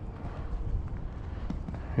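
Wind rumbling on the microphone, with faint hoofbeats of Friesian horses trotting and cantering on dirt.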